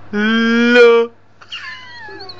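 A person's voice holding one long, loud note for about a second, a drawn-out 'lulu' call rising slightly in pitch. Near the end a fainter, higher voice slides downward.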